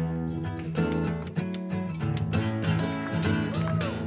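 Acoustic guitar played with a pick, a run of strummed chords and picked notes sounding through.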